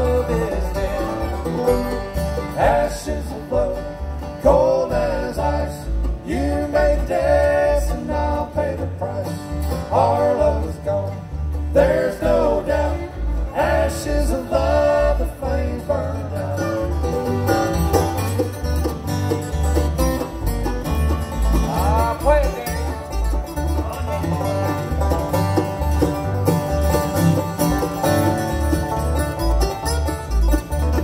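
Live bluegrass band playing: fiddle, banjo, mandolin, acoustic guitar and upright bass, with the bass keeping a steady beat under the melody.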